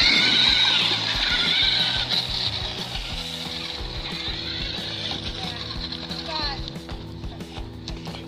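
Electric RC monster truck driving over dirt, its motor and gears whining high and wavering. The whine is loudest at first and fades as the truck pulls away, and the battery is already down at its low-voltage cutoff.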